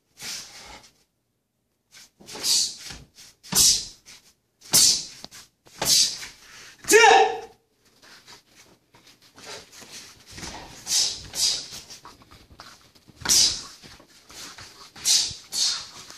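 A martial artist performing the Won-hyo kata: short, sharp swishing bursts about once a second as each strike and block is thrown, with a loud kiai shout about seven seconds in.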